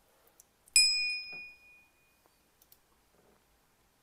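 A single bright bell ding, a notification-bell sound effect for a subscribe button, striking just under a second in and ringing away over about a second. A few faint clicks follow.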